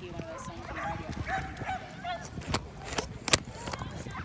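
A dog barking amid people's voices in the background, with a few short sharp sounds in the second half.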